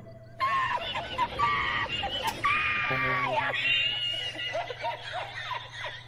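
A very high-pitched, squeaky voice squealing and crying out, with one call held for about a second near the middle, mixed with laughter.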